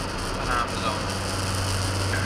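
Car cabin noise while driving: a steady low engine hum under road and tyre rumble, heard from inside the car.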